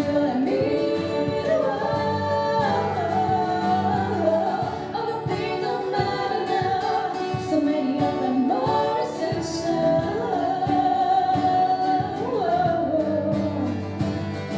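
Live acoustic pop-rock song: women's voices singing in harmony over steadily strummed acoustic guitars.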